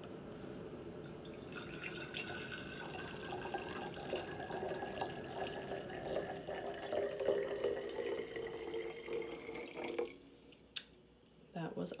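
Water poured in a steady stream from a glass measuring cup into a large glass mason jar, its pitch rising slowly as the jar fills. The pour stops about ten seconds in, followed by a single sharp click.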